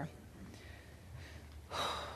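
Near silence with faint room tone, then a woman's quick in-breath near the end.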